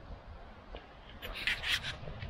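Footsteps crunching on a gravel path at a walking pace, with a louder scraping crunch in the second half, over a low rumble on the microphone.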